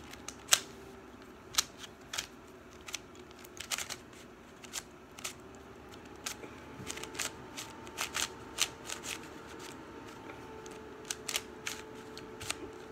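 KungFu Dot 3x3 plastic puzzle cube being turned by hand: quick, irregular clicks and clacks as its layers snap round, several a second in places, with short pauses between moves.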